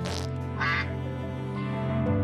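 A cartoon bird's squawks: a short raspy one at the start and a higher, pitched quack-like call about half a second in, over steady background music.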